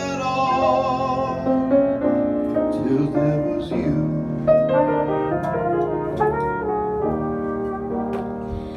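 Trumpet playing a melodic line of sustained notes over piano chords: an instrumental passage of a jazz ballad between sung verses.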